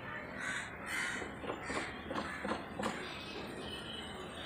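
Crows cawing, several short harsh calls.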